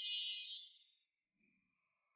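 A high-pitched electronic tone fades out about a second in, leaving near silence with a couple of faint soft sounds.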